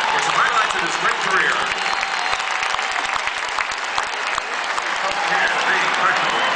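Audience applauding steadily, with a few voices and shouts mixed in.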